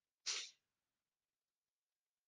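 A single short, hissy rush of breath from a person, a quick sniff or exhale near the microphone, about a quarter second long.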